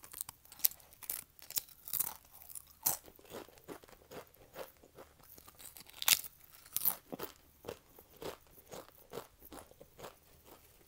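Bites and chewing of wavy Pringles potato chips: repeated sharp, crisp crunches with crackly chewing between them. The loudest crunch comes about six seconds in.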